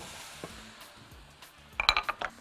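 Cut vegetables tipped from a bowl into a frying pan with a wooden spoon, ending in a quick run of sharp clinks of bowl and spoon against the pan near the end.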